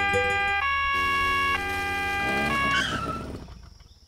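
Cartoon two-tone police siren, alternating between two pitches about once a second, over a low car-engine hum. It winds down and fades out about three seconds in.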